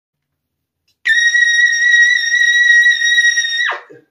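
Trumpet holding a single very high note steady for about two and a half seconds, then ending with a quick downward fall in pitch.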